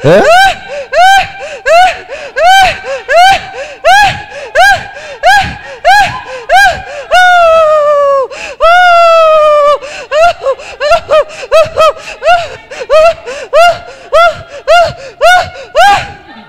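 A woman's high-pitched voice crying out through a microphone in short, rhythmic rise-and-fall cries about twice a second, broken about seven and nine seconds in by two long wails that fall in pitch.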